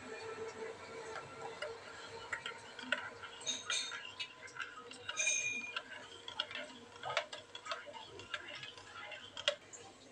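Metal teaspoon stirring cappuccino in a ceramic mug, clinking and tapping against the sides at an irregular pace, with a brief ringing clink about five seconds in.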